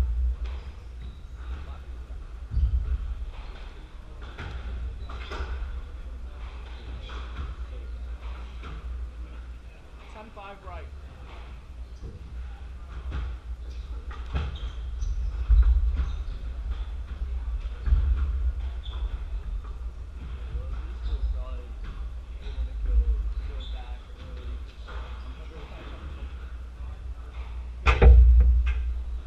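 Squash play on a wooden court: scattered sharp knocks of the ball off rackets and walls, with footsteps, over a steady low rumble. The loudest knock comes at the very end.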